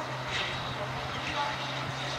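A steady low motor hum, with short faint voices or calls from spectators over it.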